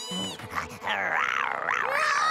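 A cartoon character's wavering, whimpering vocal cry, its pitch rising and falling, starting about half a second in and lasting to the end.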